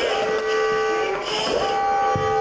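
Steady high tones held over the whole stretch, with a hiss of breath through a firefighter's breathing-apparatus mask about a second and a half in.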